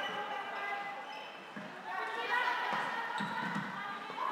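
Floorball play in a sports hall: players' voices calling out, with scattered knocks and thuds of feet, sticks and the plastic ball on the court.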